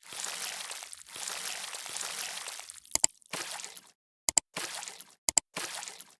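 Outro sound effect: stretches of hiss broken, from about halfway in, by sharp double clicks roughly once a second.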